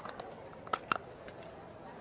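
A handful of small, sharp clicks of a film camera's back cover being unlatched and swung open, the two loudest close together a little under a second in.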